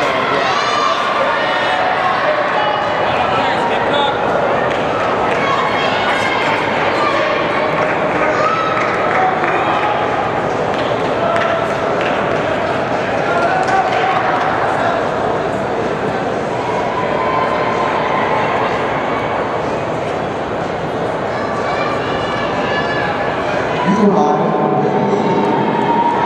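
Crowd hubbub in a large indoor track hall: many overlapping voices of spectators and athletes talking and calling out, steady throughout.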